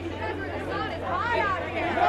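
Several voices talking and calling out over one another at a red-carpet photo call, over a steady low hum.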